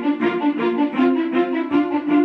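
Orchestral string music led by violins, with sustained notes over a quick, even pulse of bowed strokes.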